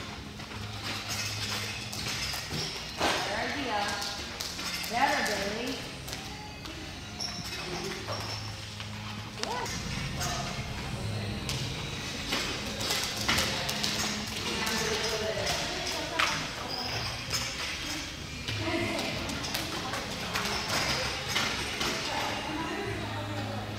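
Jump ropes slapping and bare feet landing in a rhythmic patter of short clicks, with indistinct voices and music in the background.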